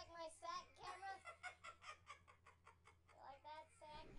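Faint, indistinct voices in a small room, with a quick run of short evenly spaced sounds in the middle and a steady low electrical hum underneath.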